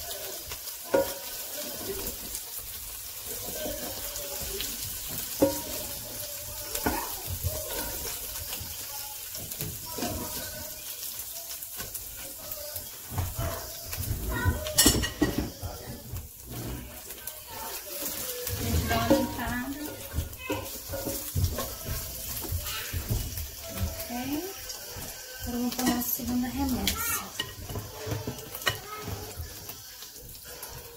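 Oil sizzling on a hot electric grill pan, with irregular clicks and knocks as a plastic slotted spatula scrapes the ridged grill plate, lifting out pieces of fried chicken.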